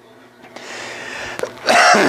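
A man clearing his throat: a breathy rasp for about a second, then a short, louder harsh clear near the end.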